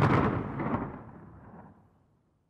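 The tail of an explosion sound effect: a boom dying away, its higher part fading first, into silence just before the end.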